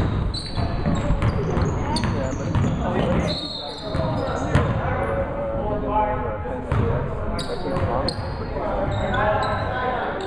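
A basketball game in a gym: a basketball bouncing on the hardwood court, with short sharp knocks and the voices of players and spectators mixed in.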